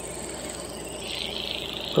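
Insects chirring steadily in a high register, the chirring growing louder about a second in.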